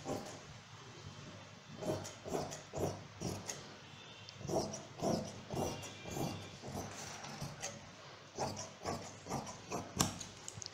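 Fabric scissors cutting through layers of cloth: a series of irregular snips, a few each second, beginning about two seconds in.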